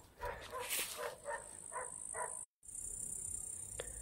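A dog barking about five times in quick succession, short pitched barks roughly a quarter second apart.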